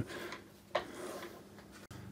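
Faint handling sounds at a metal lathe headstock: one light click a little before halfway, then low room noise, cut off abruptly near the end.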